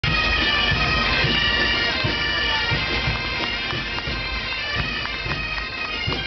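A marching pipe band of bagpipes playing together, their held drones and melody sounding steadily, with a regular low beat underneath.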